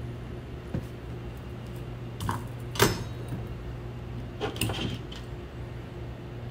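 A few light clicks and taps from hands handling the wire and solder while a wire splice is being soldered, the sharpest about three seconds in, over a steady low hum.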